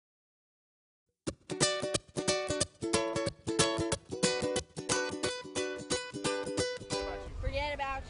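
Acoustic string instrument strummed in a quick rhythmic chord pattern, starting about a second in and stopping about seven seconds in. A person's voice follows near the end over a low rumble.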